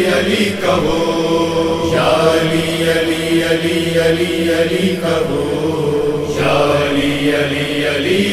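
Male voice chanting a devotional Urdu manqabat refrain, repeating 'Ali' in rhythmic pulses, with long held notes in the middle.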